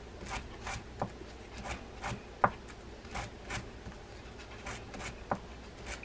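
A small soft brush scrubbing through the teeth of a fishing reel's main gear, in quick repeated strokes about two to three a second, with a sharper click about two and a half seconds in. It is working old, penetrating-oil-softened grease out of the gear channels of a grease-choked Daiwa 7850RL spinning reel.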